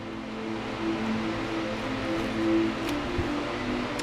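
Soft background music: quiet held notes that shift from one pitch to another, over a light hiss.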